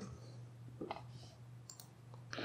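A couple of faint clicks from computer input near the end, over a low steady hum.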